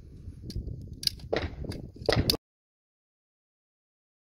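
Sharp metallic clicks and clacks of a pistol-caliber carbine being handled as it is unloaded and shown clear at the end of the stage, over a steady low rumble. The sound cuts off abruptly a little over two seconds in.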